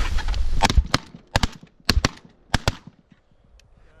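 A volley of about eight shotgun shots from several double-barrelled shotguns, mostly in quick pairs, over about two seconds, after a second of rustling movement.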